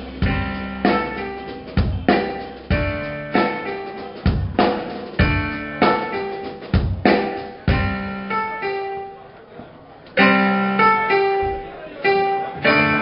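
Live band playing an instrumental passage: accented drum hits about once a second under sustained guitar and keyboard chords. The chords die away just before ten seconds in, then a new loud chord is struck.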